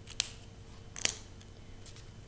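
Two sharp clicks about a second apart as a plastic felt-tip marker is handled.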